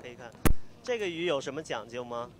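A single sharp thump about half a second in, the camera or its microphone being knocked in a jostling crowd, followed by a person speaking.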